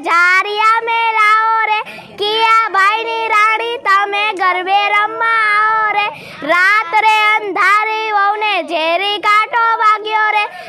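Young girls singing a Gujarati garba song in high voices, phrase after phrase with brief pauses for breath.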